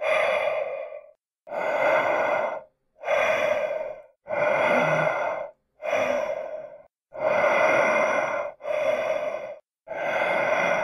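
Sound effect of heavy breathing behind a mask: about eight breaths in and out, each about a second long, with short dead silences between them.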